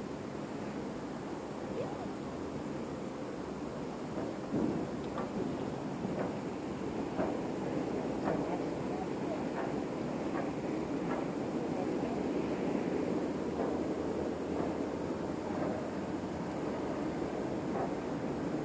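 Steady outdoor rumble of wind on the microphone. Faint short clicks come and go through the middle.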